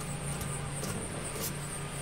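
Quiet outdoor background: a steady low hum with a thin, steady high-pitched tone above it, and one faint click about one and a half seconds in.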